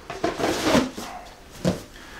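A cardboard shoe box being handled and closed, with rustling and scraping of the cardboard, then one short knock near the end as the box is set down.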